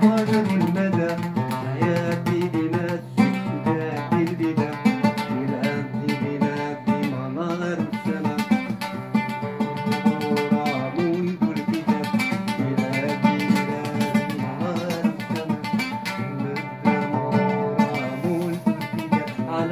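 An oud played with a pick: a continuous run of quick plucked notes.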